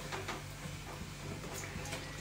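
Quiet kitchen background: a steady low hum under a faint, even hiss, with a few soft ticks.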